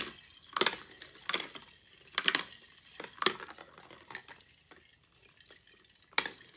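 Plastic balls rolling down a stacked spiral ball-drop tower toy: a handful of sharp plastic clacks in the first three and a half seconds, over a faint rattle, then quieter.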